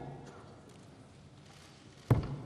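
Near-quiet room tone of a large parliamentary chamber: the echo of a man's last word dies away in the first half-second, leaving a faint, steady low hum.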